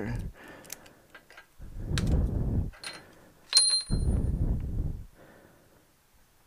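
A locking hitch pin being unlocked with its key and worked out of a steel tow hitch receiver: a few small key clicks, two stretches of low rubbing and scraping, and one sharp metallic clink with a brief ringing tone about three and a half seconds in.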